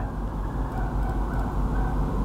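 Steady low rumbling background noise with a constant hum underneath, with no clear single event standing out.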